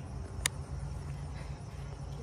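A steady low hum in the background, with a single sharp click about half a second in.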